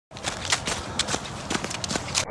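Running shoes crunching through dry fallen leaves on a trail, a crisp footfall about every third to half of a second.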